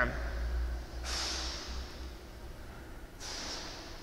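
A man breathing close to the microphone: two soft, noisy breaths, one about a second in lasting about a second, and another near the end.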